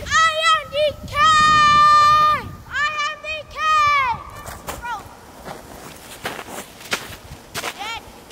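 A high-pitched voice giving several drawn-out wordless calls in the first half, one held steady for about a second, the others rising and falling. These are followed by short crunching footsteps in snow.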